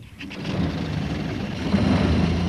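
A small van's engine, a cartoon sound effect, starting up and running steadily: it fades in over the first half second and then holds level.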